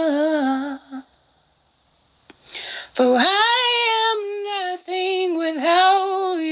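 A woman singing unaccompanied in long held notes that slide up and down. The voice breaks off about a second in and comes back in about two and a half seconds in.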